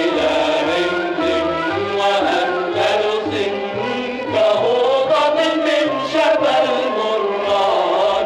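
Lebanese Arabic song recording: a melody sung over instrumental accompaniment, with a recurring low beat underneath.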